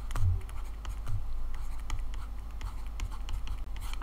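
Stylus tapping and scratching on a tablet as numbers are handwritten: a string of light, irregular ticks over a steady low hum.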